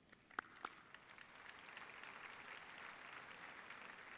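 Faint audience applause in a large hall, building gradually. Two sharp clicks come about half a second in.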